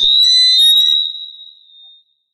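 Microphone feedback squeal from the PA system as the mic is taken up: a single loud, high whistling tone that starts suddenly and fades out over about a second and a half.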